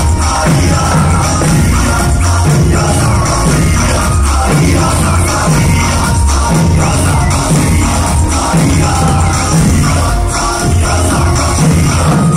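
Okinawan eisa music with singing, loud and continuous, with a steady beat of taiko drums, large barrel drums and small hand drums, struck by the eisa dancers in time with it.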